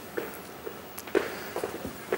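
Footsteps of a person walking across a hard studio floor, a few faint, irregularly spaced steps.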